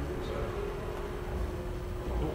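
Room tone: a low rumble with a faint steady hum held throughout.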